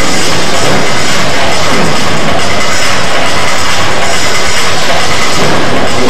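A loud, steady, distorted roar of arena din during a robot combat match, with music mixed in, overloading the recording.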